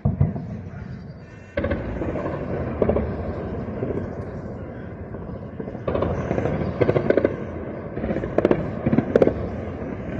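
Gunfire: a sharp report at the start, then repeated short bursts of several rapid shots, thickest between about six and nine seconds in, over steady background noise.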